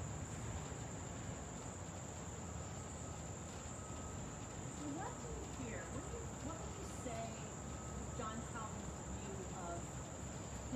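Steady, unbroken high-pitched trilling of insects in an outdoor summer chorus, with faint distant voice-like sounds in the latter half.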